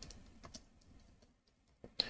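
Near silence with a few faint computer keyboard keystrokes as a search is typed.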